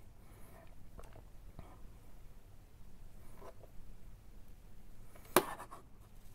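Light handling noises at a hobby workbench: soft rustles and small taps as fingers work a small part and handle a plastic model car body, with one sharp, louder click near the end.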